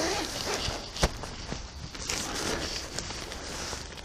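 Rustling of a tent's polyurethane-coated polyester flysheet as its door panel is pulled open and folded back, with one sharp click about a second in.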